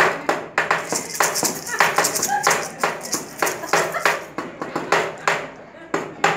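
Homemade percussion from recycled material: a stick scraping and striking a small paper-tube güiro while a little maraca rattles, in an irregular string of short strokes.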